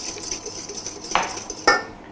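Wire whisk beating egg yolks, sugar and lemon juice in a stainless steel bowl: rapid metallic scraping and clinking, with two louder knocks against the bowl in the second half.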